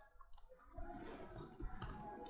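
A few faint clicks as a division is keyed into a computer's calculator, two close together near the end.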